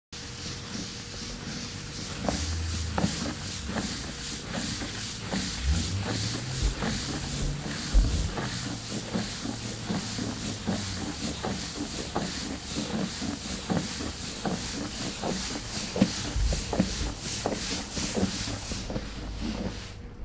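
Cardboard shipping box being cut open with a knife: the blade scraping along packing tape and cardboard, with small knocks as the box is handled, over a hiss that pulses a few times a second.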